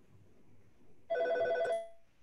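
A telephone ringing: one short electronic ring of steady tones, starting suddenly about a second in and lasting under a second.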